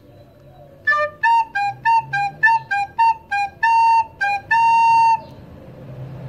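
A plastic recorder playing a short melodic phrase on the notes D, A and G. One higher note starts it about a second in, then about a dozen quick notes step back and forth between two close pitches, ending on a longer held note about five seconds in.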